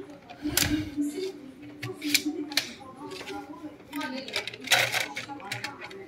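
Tray of a slim Cocopa external USB DVD drive being opened and a DVD laid on it and pressed onto the centre hub: a scattered series of light plastic clicks and taps.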